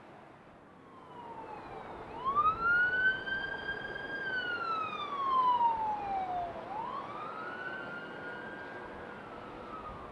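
A siren wailing. Its pitch sweeps up quickly, holds high for a couple of seconds and slides slowly down, then climbs and falls a second time.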